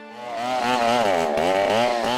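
Chainsaw cutting into a standing tree trunk, its engine starting suddenly a moment in, with the pitch wavering up and down as it works through the wood.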